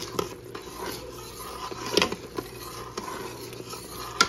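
A metal spoon stirring thick cornstarch-thickened sauce in a stainless-steel pot, scraping and knocking against the pot wall, with the sharpest knock about halfway through.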